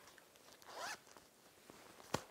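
The zipper of a small fabric cosmetic pouch being pulled shut: one short, faint zip about halfway through.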